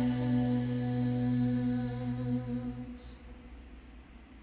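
An a cappella vocal group holding its final note in unison, a steady sung tone that fades out about three seconds in. A short soft hiss follows.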